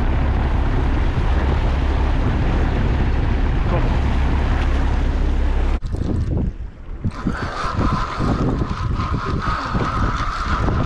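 Wind buffeting the microphone over splashing water beside a small boat as a fish is released over the side. The sound changes abruptly about six seconds in to quieter water noise with scattered knocks, and a steady high whine starts about a second later.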